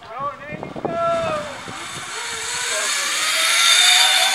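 Zip line trolley running along the steel cable as a rider launches. It makes a whirring hiss that builds steadily louder as it picks up speed.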